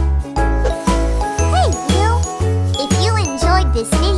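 Bright children's outro jingle with tinkling bell tones over a steady bass beat about two a second. From about a second and a half in, playful swooping, sliding cartoon vocal sounds join the music.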